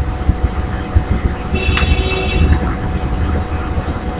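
Steady low background rumble, with a brief high-pitched tone and a click about halfway through.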